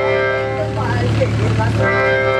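Electronic keyboard holding a steady organ chord. A voice rises and falls over it for about a second midway, then the chord comes back alone.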